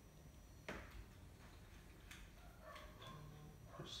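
Near silence with a few faint clicks and taps, the clearest under a second in: small ring-terminal leads being fitted under a battery's terminal bolts.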